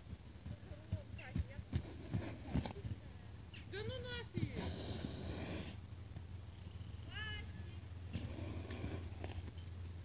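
Horse trotting up over snowy ground: a few soft hoof thuds in the first three seconds, with faint voices in the background.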